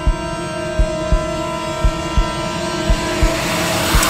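Suspense film score: a held drone of steady tones under a low double thump that repeats about once a second, like a heartbeat. A noisy swell builds near the end.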